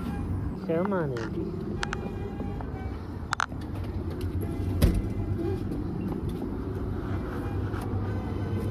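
Steady low rumble of road traffic, with a young child's short vocalization about a second in and a few sharp clicks and taps, the loudest a single thump near five seconds.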